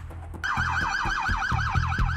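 Police car siren in a fast yelp, a high tone warbling up and down about eight times a second, cutting in sharply about half a second in.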